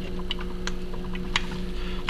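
A few light, irregular clicks from a caulking gun as silicone is squeezed out, over a steady low hum.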